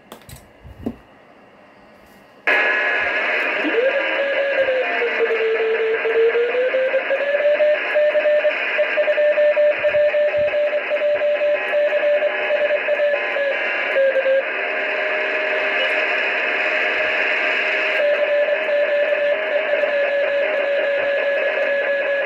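Amateur radio transceiver receiving the RS-44 satellite downlink in sideband mode. Receiver hiss switches on about two and a half seconds in, carrying a steady carrier beat note that dips in pitch, rises and then holds steady. A few clicks come before the hiss.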